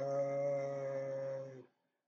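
A man's long, drawn-out hesitation "uhhh", held at one steady pitch for about a second and a half, then stopping.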